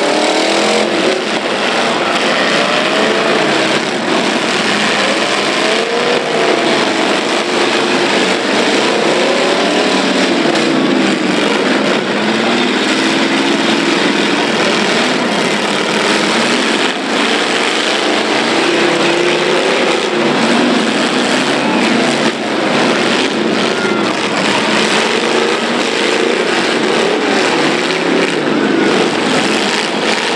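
Several demolition derby cars' engines revving and running together, their pitches rising and falling against each other as the cars drive and push in the dirt arena.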